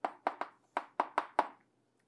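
Chalk on a blackboard while a word is written: a quick run of about seven sharp taps over a second and a half, stopping shortly before the end.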